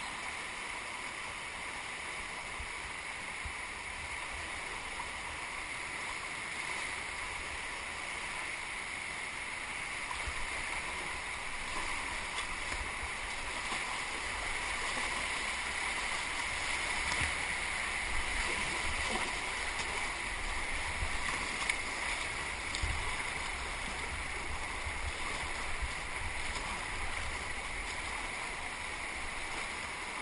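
Rushing water of a muddy river running high in flood, heard from a kayak on it: a steady wash that grows louder through the middle as the boat passes through whitewater, with a few sharper splashes.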